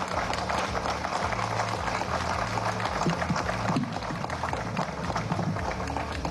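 Applause, a dense steady patter of many hands clapping, with music playing underneath.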